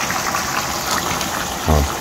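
Chicken pieces, potatoes and carrots simmering in a sauce in a frying pan on a gas burner: a steady bubbling hiss.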